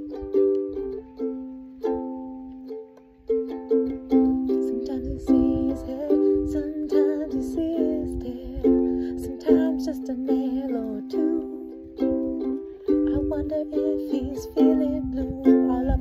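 Ukulele strummed in a steady rhythm, moving through a slow chord progression, with a wordless vocal line over the chords from about four seconds in.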